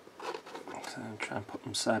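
A man speaking, starting a moment in, over quiet room tone.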